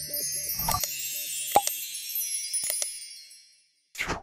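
Outro jingle of high chimes and sparkling tones with a few struck hits, the low backing music stopping early and the chimes fading out near the end.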